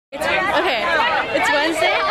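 Speech: voices talking over one another.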